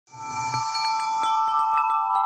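Chiming logo jingle: several bell-like tones ring together over a run of light strikes, with a shimmering swish at the start.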